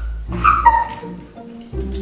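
Siberian husky whining in complaint: a short high whine, then a slightly lower, steadier one ending about a second in, over background music.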